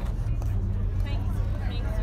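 A car engine idling with a steady low rumble, under the faint chatter of people around.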